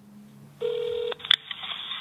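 A single telephone tone over a phone line, a steady beep of about half a second starting just past halfway in, followed by a sharp click as the call connects.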